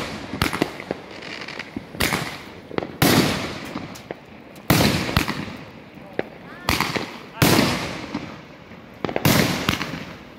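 Aerial fireworks going off overhead: about five loud booms, one every one to two and a half seconds, each trailing off in a long echoing rumble, with a few small crackles in between.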